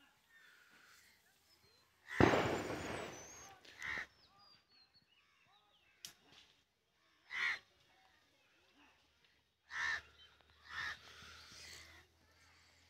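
Crows cawing outdoors: four separate single caws, spread across the last eight seconds. About two seconds in there is a louder, longer noisy burst, and faint small bird chirps come between the caws.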